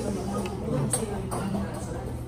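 Indistinct voices of people talking in a restaurant, with a couple of light clicks about a second in.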